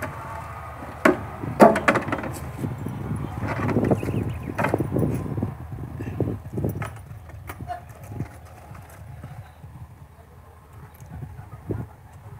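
Irregular hollow knocks and clatter, a few sharp ones in the first seconds and sparser ones later, over a steady low rumble.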